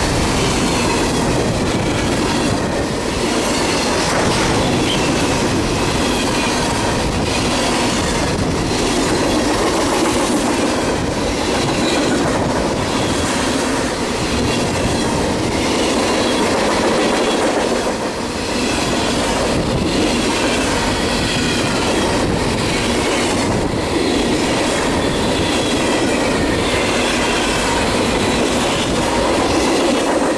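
Freight train passing close by at speed: a steady loud rumble of container-laden intermodal cars, with repeated clicking of wheels over rail joints and a faint, wavering high wheel squeal.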